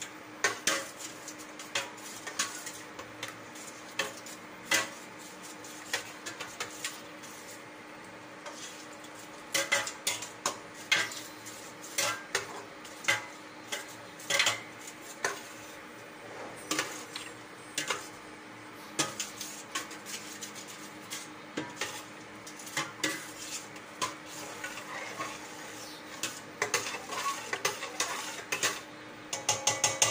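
Metal ladle clinking and scraping against a stainless steel pot as soup is stirred, in irregular clinks throughout. A steady low hum runs underneath.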